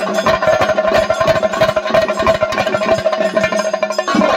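Kerala ritual percussion ensemble playing: fast, dense drum strokes under a steady held tone.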